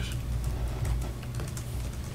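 Scattered soft clicks of typing on a laptop keyboard over a low steady hum.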